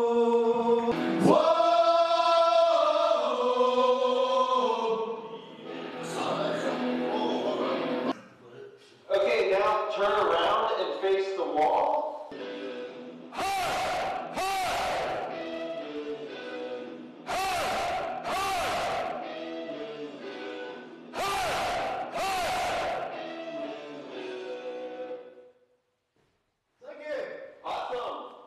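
A group of men singing together in a studio, with a held, sliding melody at first; then they shout a loud 'O' in unison, twice in quick succession, three times about four seconds apart, with quieter singing between.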